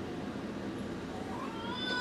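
Quiet room hum, then about a second and a half in a high-pitched, drawn-out vocal cry begins in the room and carries on past the end, a wail like a meow.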